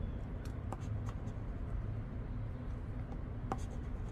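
Scratch-off lottery ticket being scratched with a chip-shaped scratcher tool: a light, steady scraping with a few small clicks, over a low steady hum.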